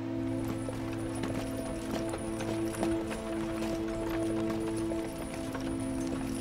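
Horses' hooves clip-clopping in an irregular patter over background music with long held notes.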